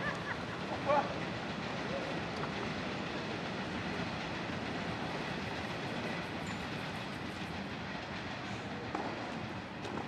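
Steady rumbling noise of passing rail traffic that eases slightly towards the end.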